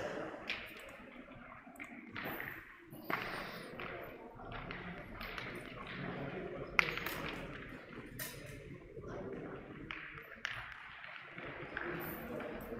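Metal pétanque boules clacking now and then, sharp single knocks, the loudest about seven seconds in, over a background murmur of voices.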